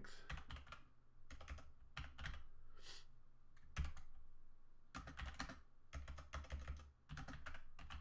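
Typing on a computer keyboard: quick runs of keystrokes in short bursts, with pauses between them.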